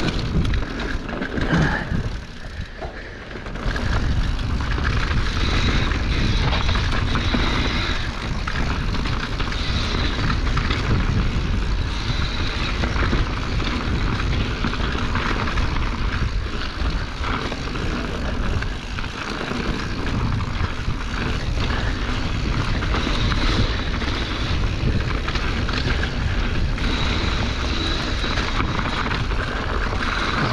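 Mountain bike riding down a rough dirt singletrack, heard from a handlebar-mounted action camera: steady wind rumble on the microphone with tyre noise and rattles over the ground, easing briefly a couple of seconds in.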